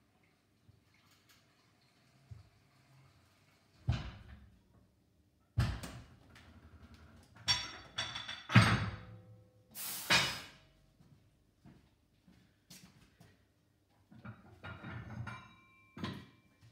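Scissor car lift lowering a van: a faint hiss, then a string of loud metallic clunks and bangs from about four to ten seconds in as the lift comes down and bottoms out, with more rattling near the end.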